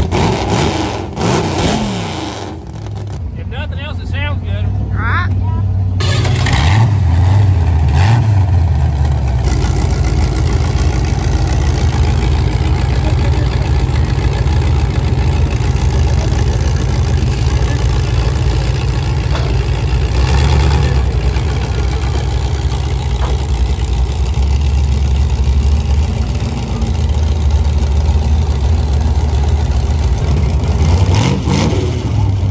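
Drag-race V8 engine running on a car trailer: revs fall away in the first few seconds, then it holds a steady, loud idle.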